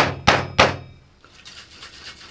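Three quick knocks of a fist on the top of a metal cocktail shaker, about a third of a second apart, to free shaker tins jammed tight together.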